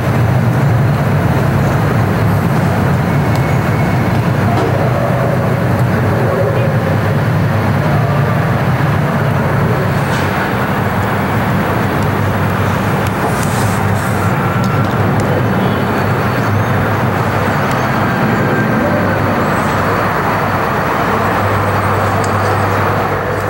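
Steady urban traffic noise: a constant low rumble of road vehicles.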